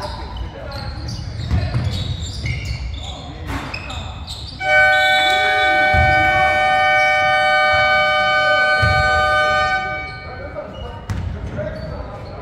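Basketball game buzzer sounding one long, steady, loud horn for about five seconds, starting a little before the middle and cutting off; it signals a stoppage in play. Before it, a ball bouncing and knocks on the hardwood court.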